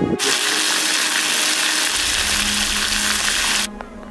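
A loud, steady, even hiss that starts suddenly and cuts off abruptly near the end.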